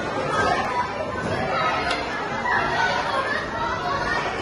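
Background chatter of several voices, echoing in a large indoor hall.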